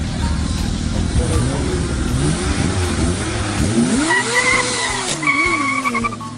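A car and a sport motorcycle launching from a standing start in a drag race, engines revving with tyre noise. The engine note climbs and falls as they accelerate away, with a thin high squeal in the last couple of seconds.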